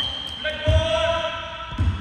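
A basketball bouncing on a wooden gym floor: two heavy thumps about a second apart.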